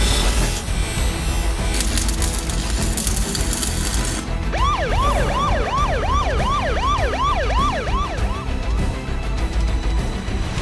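Background music with a heavy bass. For about the first four seconds a harsh hissing crackle of arc welding runs over it. Then, about halfway through, a siren yelps in quick up-and-down sweeps, nearly three a second, for about four seconds.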